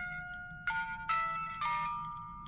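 Small hand-cranked music box: the pinned cylinder plucks the steel comb and plays a slow tune of single ringing notes, about half a second apart.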